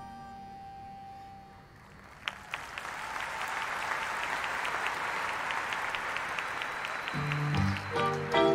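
A marching band's soft held chord dies away in the first second or two, then the audience breaks into applause with some sharp nearby claps. The band starts playing again, low brass first, near the end.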